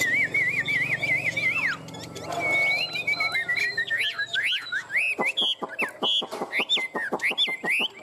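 Caged Chinese hwamei (họa mi) singing loudly in whistles. It opens with a quick wavering trill, then after a short pause gives a run of varied whistles that swoop sharply up and down, with rapid clicks running through the last few seconds.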